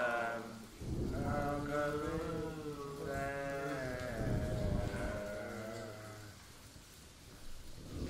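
A drawn-out, wavering sung chant of long held notes that slowly bend in pitch, trailing off about six seconds in.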